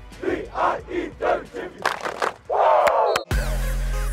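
A football team shouting a chant in unison: a quick run of short rhythmic shouts, a few sharp claps, then one long loud group shout. About three seconds in, it cuts off suddenly and electronic music with a steady beat takes over.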